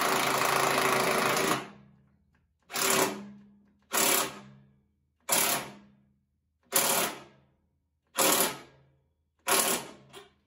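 Impact driver running a nut down a carriage bolt: one long run of about two seconds, then six short bursts of hammering a second or so apart as the nut seats and tightens.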